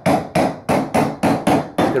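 Even, repeated strikes of a hand tool on a motorhome ceiling panel, about three a second, while an opening for a skylight is cut through it.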